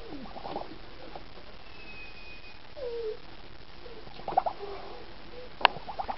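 A few soft, short animal calls with wavering pitch, from the duck or kitten squaring off. A single sharp click comes near the end.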